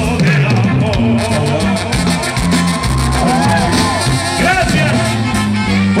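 Live band music from a Mexican regional group: a steady bass line and drums with melodic lines above, playing an instrumental passage between sung verses, picked up from the crowd at loud, even level.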